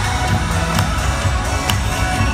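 Loud parade music played over loudspeakers, strong in the bass.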